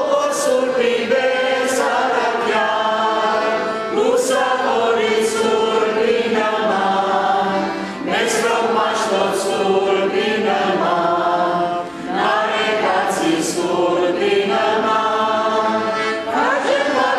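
Liturgical chant sung in phrases of about four seconds each, with short breaks between phrases.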